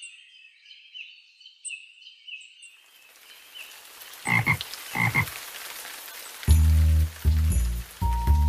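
Cartoon nature sound effects: faint bird chirps, then the hiss of rain with two frog croaks about four and five seconds in. Near the end a children's song's music comes in with a steady bass beat.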